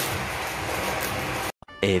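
Steady crackling rustle of a plastic courier pouch being handled and opened, cut off abruptly about one and a half seconds in. A cartoon narrator's voice then begins the words 'A few moments later'.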